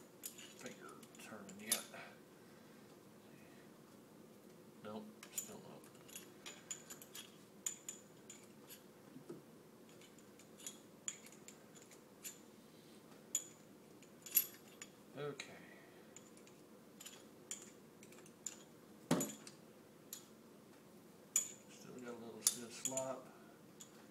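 Small metal hand tools clicking and clinking against a mini lathe's steel motor mount and bolts as the motor is tensioned and tightened by hand: irregular sharp clicks, with one louder knock about three-quarters of the way through.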